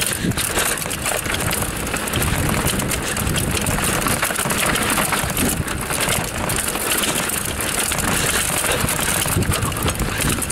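Raleigh Tekoa 29er hardtail mountain bike riding down a rough dirt singletrack: tyres crunching over dirt and loose rock and the unsuspended frame and 3x8 drivetrain rattling over bumps, with an irregular clatter of small knocks over a steady rushing noise.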